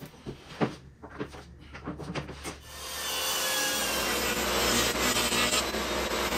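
A few knocks as a sheet of plywood is handled. Then, about three seconds in, a table saw comes up to speed and runs steadily, its blade cutting through the plywood as it is pushed along the fence.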